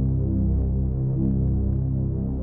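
Low, droning background-score music: sustained deep synth chords that shift every second or so, with a slow throb.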